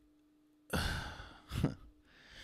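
A man sighs heavily into a close microphone about two-thirds of a second in, the breath fading out over half a second, then a brief second breath sound. A faint steady hum sits underneath.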